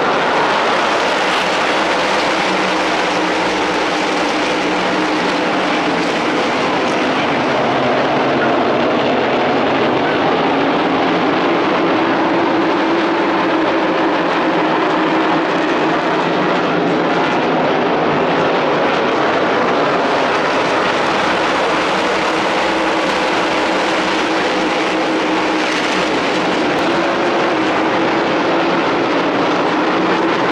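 Several race car engines running together on the track, loud and steady throughout with slowly drifting pitch.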